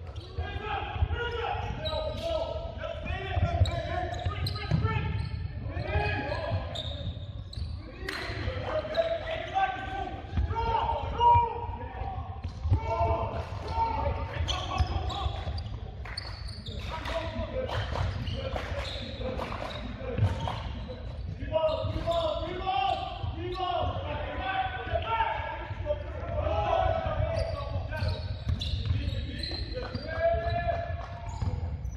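A basketball bouncing repeatedly on a hardwood gym floor during play, with players' voices calling out through much of the time.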